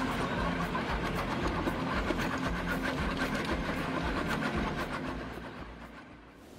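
MB-R900 drum cutter on a Hitachi excavator arm grinding a tree stump: a dense, rapid cracking of wood being chewed by the rotating drum over the steady hum of the excavator's engine and hydraulics. The sound fades out near the end.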